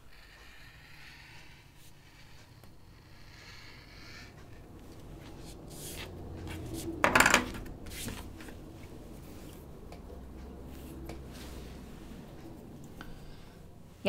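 Quiet handling of fabric on a cutting mat, hands shifting and smoothing cloth, with one sharp clack of a hard object about seven seconds in.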